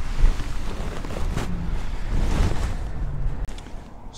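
Wind buffeting the microphone outdoors: a steady rumbling noise without speech that eases off near the end.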